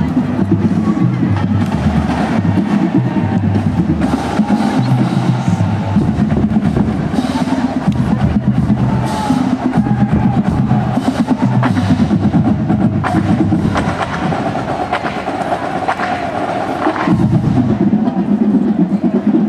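A marching band playing: low brass holding notes that change in steps, under a drumline's snare and bass drums beating steadily.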